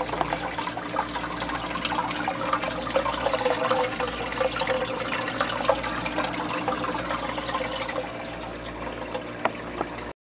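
Water in a 40-gallon fish tank trickling and splashing, with many small sharp drips and splashes over a steady low hum.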